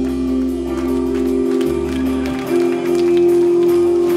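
Live rock band playing an instrumental passage: held, distorted electric guitar and bass chords that change every second or two, over a steady run of cymbal hits.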